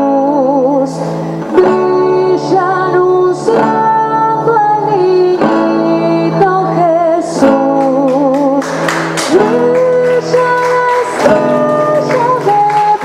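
A woman sings a melody with vibrato into a microphone, accompanying herself on an acoustic guitar.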